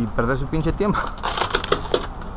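A man's voice briefly. Then, in the second half, a quick run of crackling clicks: crumbs of broken tempered back glass crunching as the cut-out wire is worked around the frame.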